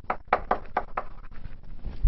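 Chalk writing on a blackboard: a quick run of about eight sharp taps and scrapes over about a second, followed by a few soft low thumps near the end.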